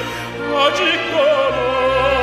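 Korean art song (gagok) sung in classical style with wide vibrato over orchestral accompaniment; a new held note starts about a second and a half in.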